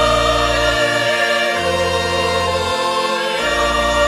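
Church choir singing a sung Mass piece in chords over accompaniment with held low bass notes that change every second or so.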